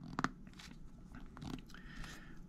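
Faint clicks and light rubbing as a rubber stopper is pushed and turned on the end of a clear plastic syringe barrel, with a brief faint squeak near the end.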